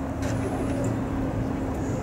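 Steady low rumble of road traffic with a constant engine hum.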